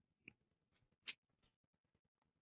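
Near silence: room tone, with two faint short clicks, one about a third of a second in and a slightly louder one about a second in.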